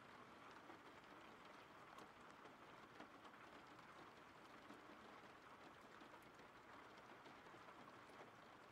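Faint recorded rain ambience: a steady, soft hiss of rainfall with a few light drop ticks.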